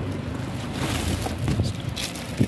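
Rustling and handling noise as plastic-wrapped children's books are moved about, with low rumbling of the phone microphone being handled; the rustle is strongest in the middle.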